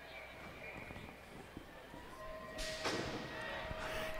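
Faint indoor arena sound at a BMX start gate, with a muffled voice in the background. A short burst of noise comes under three seconds in, as the gate drops and the riders go. A steady tone is held to the end.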